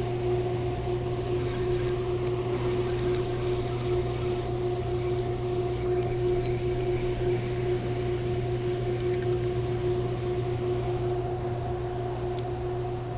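A steady machine hum: a low drone with a higher steady tone above it, unchanging throughout, over a faint wash of noise.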